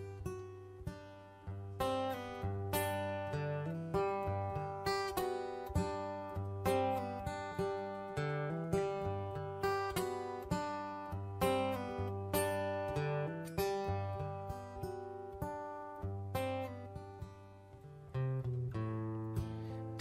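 Two acoustic guitars playing an instrumental passage, picked notes over a steady strummed rhythm, with no singing.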